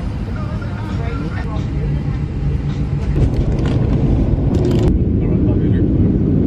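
Jet airliner cabin noise: a steady low engine rumble that grows louder about three seconds in, with faint voices underneath.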